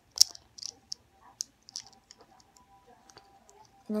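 Plastic LEGO pieces clicking together in the hands as a flat 1x2 tile is pressed onto a brick: one sharp snap just after the start, then several lighter, scattered clicks.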